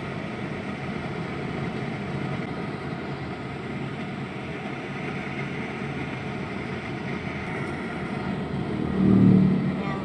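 Steady road and engine noise heard inside a car's cabin while driving on a highway. Near the end a louder, low swell rises for under a second.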